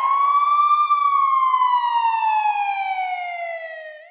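A single siren wail: the pitch rises quickly, peaks about a second in, then falls slowly and steadily. It cuts off abruptly at the end.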